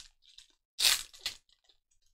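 Foil wrapper of a trading card pack being torn open and crinkled: a few short, sharp crackling rustles, the loudest about a second in.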